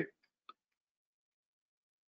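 Near silence: the tail of a spoken word at the very start, one faint click about half a second in, then dead silence.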